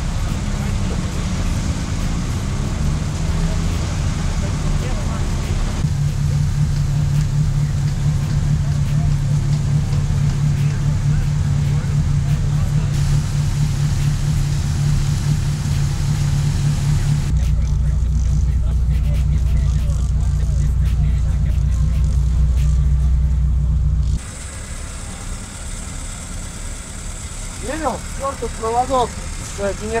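Car engine running at steady revs, a deep continuous drone that shifts pitch about 6 seconds in and again about 17 seconds in, then stops abruptly about 24 seconds in, leaving a quieter background.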